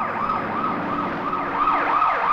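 Police vehicle siren sounding in a fast wail, its pitch rising and falling about three times a second.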